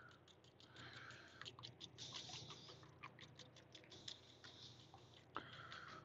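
A fork whisking raw eggs in a small bowl: quick, faint, irregular taps and scrapes.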